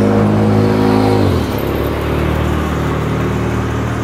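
A motor vehicle passing on the road, its engine note loud and steady, then dropping in pitch about a second and a half in as it goes by, and continuing lower.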